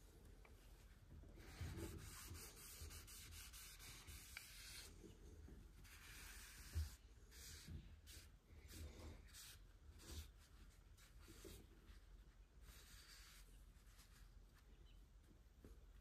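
Faint rubbing of a cloth pad over the smooth top of a walnut base, in stretches of strokes with pauses between, and a few soft knocks as the base is handled.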